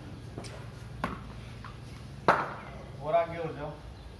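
Four sharp knocks, the loudest a little over two seconds in, followed by a man speaking briefly.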